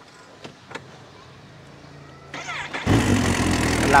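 Kawasaki Ninja H2 SX SE's supercharged inline-four being started: two faint clicks, then the starter cranks briefly with a rising whine. The engine catches about three seconds in and runs at a steady idle.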